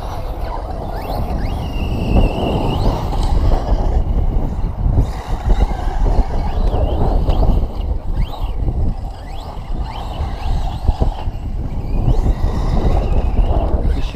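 Loud, gusty wind buffeting the microphone, with faint whines of 6S electric RC cars' motors rising and falling as they drive the track.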